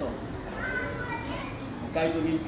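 Children's voices chattering faintly in the background during a pause in a man's speech over a microphone.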